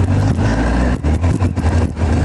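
1986 Kawasaki GTR1000 Concours inline-four engine running steadily as the bike rolls off at low speed. The rider says it runs harshly, like all Kawasakis. A few short clicks come between about one and one and a half seconds in.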